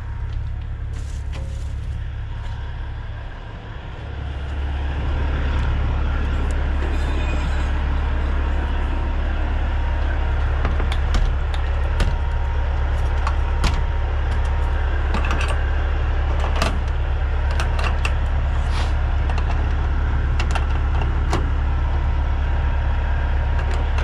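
Vehicle engine idling: a steady low drone that gets louder about four seconds in, with scattered short clicks and knocks on top.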